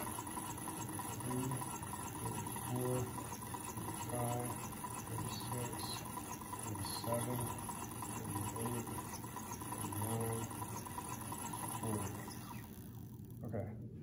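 Hand-cranked Wimshurst machine running, its plastic disks spinning with a steady whir and a low pulse about every one and a half seconds as the handle turns, building charge in its Leyden jars. The whir stops near the end.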